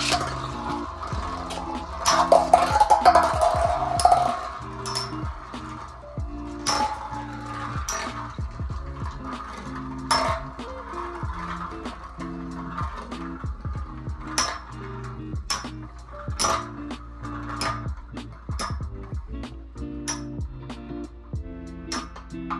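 Background music with a steady beat, over which two metal-wheeled Beyblade spinning tops clink sharply against each other many times as they collide. A louder whirring burst comes about two seconds in, as the tops are launched into the stadium.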